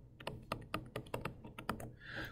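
Stylus tip tapping on a tablet's glass screen while writing a short handwritten note: a quick, irregular run of about a dozen light clicks.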